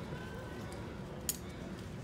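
Low, steady background murmur of an outdoor street-show crowd with faint voices, and one brief sharp click a little past the middle.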